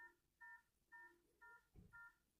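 Faint short electronic beeps, each a chord of three tones, repeating evenly about twice a second, with a soft low bump near the end.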